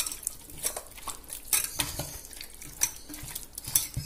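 Chicken pieces being mixed by hand in a metal pot, coating them in tandoori marinade: irregular clinks and knocks against the pot, with soft squishing of the meat.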